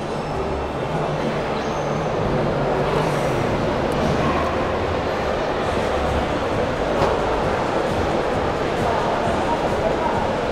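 Steady background din of a busy indoor convention hall: many voices blending into a murmur, with music playing somewhere in the hall.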